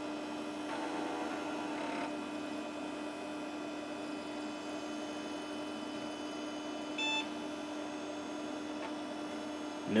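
Desktop PC running during its BIOS power-on self-test, a steady electrical and fan hum. About seven seconds in comes one short PC-speaker beep, the POST beep that marks the start of booting.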